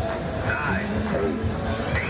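Mondial Top Scan fairground ride running with riders aboard, its machinery giving a steady low running noise, with voices mixed in.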